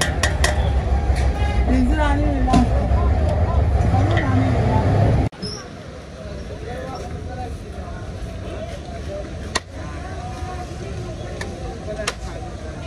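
Street ambience of people talking and traffic, with a heavy low rumble for the first five seconds that cuts off suddenly. After that comes quieter street noise with voices and one sharp click about ten seconds in.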